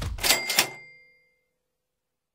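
Logo sound effect: the last of a rapid run of mechanical clicks, then a bright metallic burst with a bell-like ding about a quarter second in, ringing out and fading over about a second.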